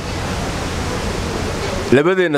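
A steady, even rushing hiss with no speech in it, spread across low and high pitches alike.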